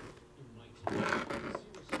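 Hard clear plastic mini-helmet display case being handled and turned by hand: a single click at the start, then about a second of plastic handling and rubbing noise from about a second in.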